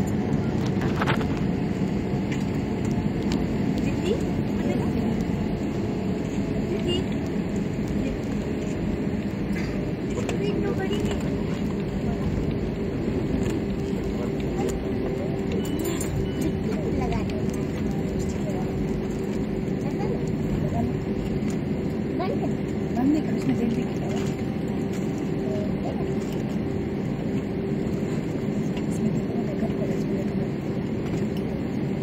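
Steady cabin noise of an Airbus A320-family jet's engines at taxi power, heard from inside the cabin. A steady hum joins from about ten seconds in.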